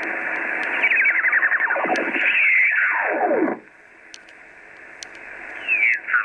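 Receiver audio from a Kenwood TS-480HX HF transceiver being tuned across the 20-metre sideband (USB) voice band. Stations slide down in pitch as the dial sweeps past them. About halfway through the signals drop away to faint band hiss, and another sliding signal comes in near the end.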